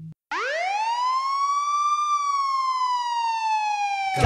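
A siren wailing once: its pitch climbs for about two seconds, then slowly sinks, used as a sound effect at the start of a song. Band music comes in right at the end.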